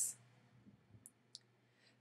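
A quiet pause with a faint steady low hum and two small, faint clicks about a second in, close together.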